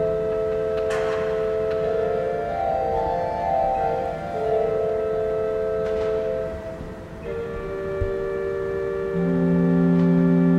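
Pipe organ playing slow, sustained chords of held notes; the chord shifts about seven seconds in and a low bass note enters near the end.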